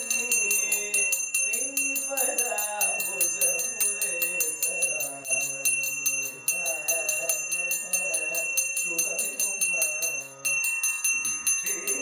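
Brass temple handbell rung rapidly and steadily, in a fast even rhythm, during the waving of the oil lamp (aarti), over a man singing a devotional song.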